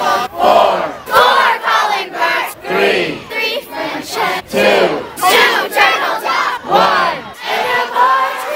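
A crowd of voices shouting a countdown in unison, one loud call roughly every second.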